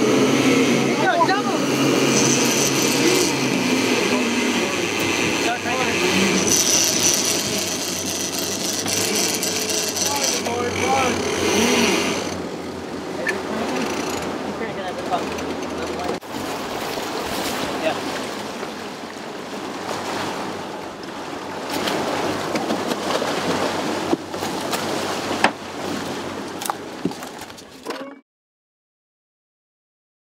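Boat running fast on four Mercury outboard motors, the motors humming under the rush of the wake and wind on the microphone, with crew voices shouting over it. The sound cuts off abruptly shortly before the end.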